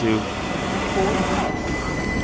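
Southern Class 377 electric multiple unit pulling away from the platform and passing close by, a steady rush of train noise. A thin, steady high-pitched whine strengthens about one and a half seconds in.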